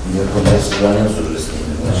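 A man's voice talking, with a short knock about half a second in.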